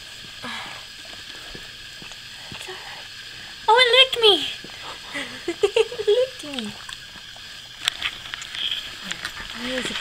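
A newborn puppy squealing: one loud, high, wavering cry about four seconds in, then a string of shorter squeaks a second later. Wet licking sounds from the mother dog run underneath.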